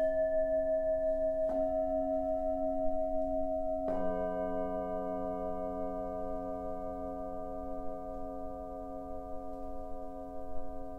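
Tibetan singing bowls struck with padded mallets: two strikes, about a second and a half and four seconds in, each adding a new ringing tone over the bowl still sounding from before. The tones overlap, waver slightly and fade slowly.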